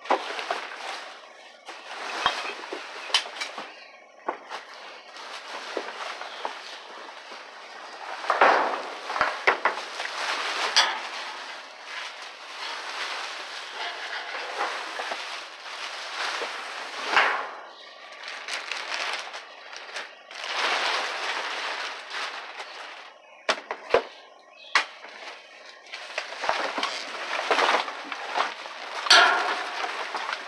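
Plastic trash bags crinkling and rustling as they are handled and shifted among cardboard in a dumpster, in irregular bursts with a few sharp clicks.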